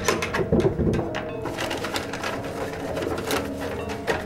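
Hands rummaging in a wooden chest of drawers: a busy run of knocks, clicks and rustles, with a heavier bump about half a second in.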